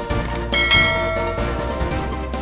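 Background music with a bright bell-like chime about half a second in, fading over the next second: a ding sound effect for a subscribe-button animation.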